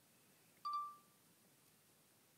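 A single short electronic beep, a clear tone with a click at its onset, that fades out quickly, over quiet room tone.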